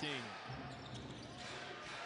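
Basketball arena sound: a ball being dribbled on the hardwood court under a low, steady crowd murmur, with the falling tail of a commentator's word right at the start.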